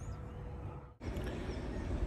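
Outdoor ambience: a steady low rumble of wind on the microphone with a faint bird chirp at the start. The sound cuts out abruptly about a second in, then picks up again as a similar outdoor background.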